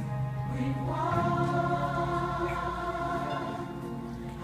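Gospel choir music, the choir holding a long, steady chord that begins about a second in and carries through almost to the end.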